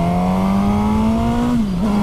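Suzuki GSX-S1000's inline-four engine pulling in gear, its pitch climbing steadily as the bike accelerates. About a second and a half in the pitch drops briefly, then holds steady.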